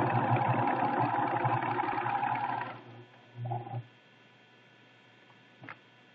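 Pfaff Creative 1473 CD sewing machine stitching fabric at a steady speed, stopping about two and a half seconds in. It runs again briefly for a few stitches just before the four-second mark, and a faint click follows near the end.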